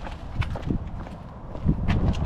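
Footsteps of shoes on asphalt pavement at a walking pace: a few short, irregularly spaced steps.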